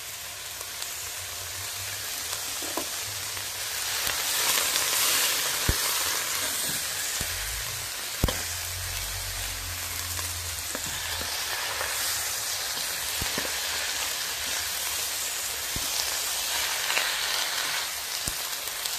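Snow peas, squash and onions sizzling in a hot wok as they are stir-fried, growing a little louder about four seconds in. A spatula knocks and scrapes against the wok now and then, most sharply about eight seconds in.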